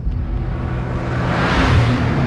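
A car's engine rumbling, with the rush of a car going by that swells from about a second in to a peak near the end.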